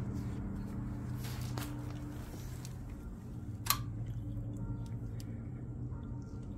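Quiet, steady low hum with a single sharp click a little past the middle.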